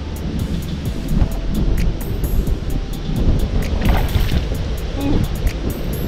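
Background music with a steady beat over low wind rumble on the microphone.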